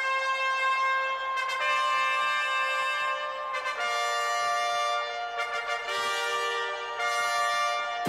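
A brass band plays a slow fanfare of long held chords, changing every couple of seconds.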